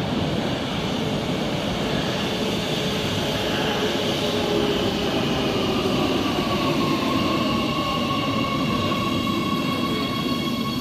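Oslo Metro MX3000 electric train pulling into an underground platform: wheel and rail rumble, with a motor whine that falls in pitch as the train brakes. The whine then settles into a steady set of tones as the train slows to a stop.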